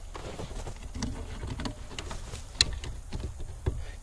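Fingers working the plastic wiring plug and release clip at a truck's gateway module behind the dash: scattered small clicks and rubbing, with one sharper click a little after halfway.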